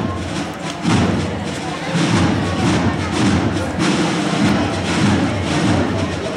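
Uneven low thudding and rumble, the loudest sound throughout, over crowd voices and the music of a processional wind band.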